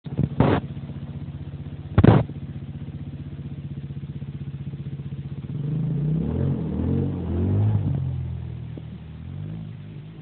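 Drift car's engine running with a rapid steady pulse, broken by two loud thumps in the first two seconds. About halfway through it revs up and down repeatedly, the pitch rising and falling for several seconds, then it fades near the end.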